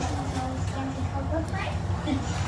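Faint voices talking in the background over a steady low hum.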